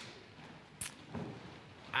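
Faint steady background hiss with one short, sharp click a little under a second in and a weaker knock just after.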